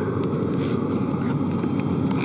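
Steady whirring hum of the International Space Station's cabin ventilation fans and equipment, with a few faint soft rustles.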